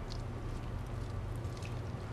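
Steady low background hum, with faint wet squishing as fingers work the skin of a raw turkey leg loose from the meat.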